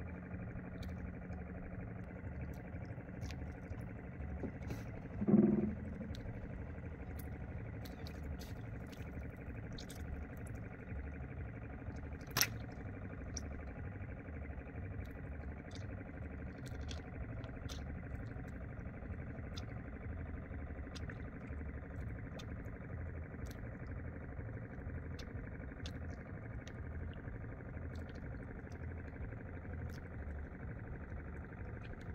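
A steady low hum with an even pulsing texture, like a motor running at a distance. A brief louder sound about five seconds in and one sharp click about twelve seconds in.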